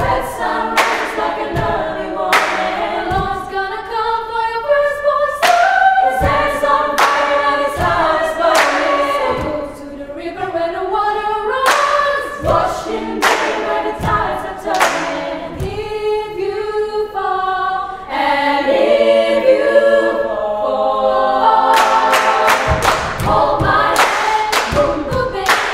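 Female choir singing a cappella in close harmony, with sharp percussive hits keeping time every second or two.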